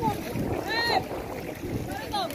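Voices of a crowd of workers calling out, with one high-pitched shout just under a second in, over a steady wash of water as people wade through the canal.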